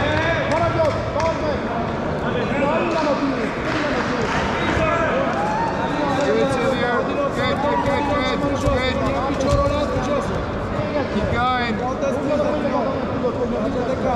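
Overlapping voices of coaches and spectators talking and shouting in a large, echoing sports hall, with a few dull thuds among them.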